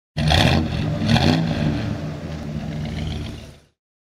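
Car engine revved twice in quick succession, then settling back and fading out near the end.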